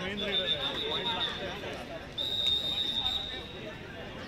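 Spectators' voices and shouting, with two long, steady, high-pitched whistle blasts of about a second each, one near the start and one about two seconds in.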